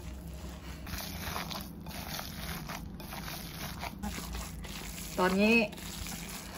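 A hand in a disposable plastic glove mixing and kneading raw gyoza filling of pork mince and chopped cabbage in a glass bowl: soft, irregular squishing of the wet mince and rustling of the plastic glove.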